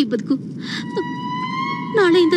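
A single sustained high electronic tone sets in about halfway through and holds, creeping slightly upward in pitch: a sound effect from the film's background score.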